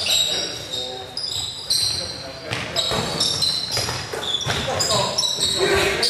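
Basketball game in a gym: sneakers squeaking on the hardwood floor again and again, the ball bouncing, and players calling out.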